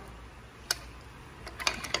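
A few light clicks as a slide-hammer fuel injector puller, with the removed injector still on it, is handled: one sharp click under a second in, then a short cluster near the end.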